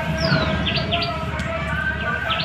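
Songbird calling outdoors: one falling whistled note, then a quick run of short, high chirps, over a low steady background rumble.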